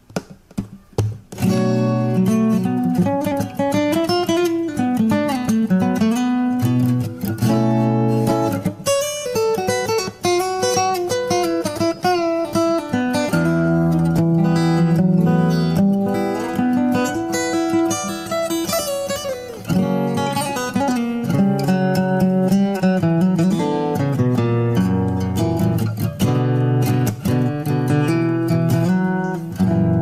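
Solo fingerstyle steel-string acoustic guitar: a picked melody over moving bass notes with strummed chords, starting about a second in.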